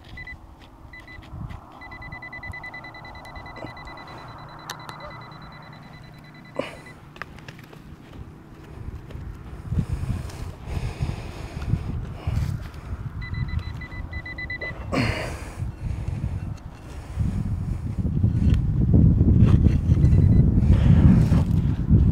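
Metal-detecting pinpointer beeping with a high, rapid pulsed tone as it is held over a target in a dig hole: first in short stutters, then held for several seconds, then once more for a second or two. Soil and stubble are scraped and crunched by a gloved hand and a digging trowel, loudest in the last few seconds.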